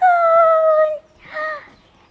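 A horse whinnying: one long call that sags slightly in pitch, then a short second call about a second and a half in.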